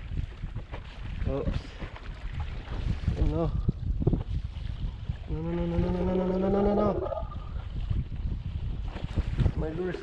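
Wind buffeting the microphone of a camera on a windsurf board at sea, a steady low rumble and flutter, with water rushing past the board. A man's voice cuts in briefly about a second in, again around three seconds, and holds one long drawn-out sound near the middle.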